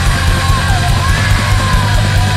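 Hardcore/blackened punk band playing at full tilt: heavy distorted guitars and bass over fast, steady drumming, with a yelled vocal.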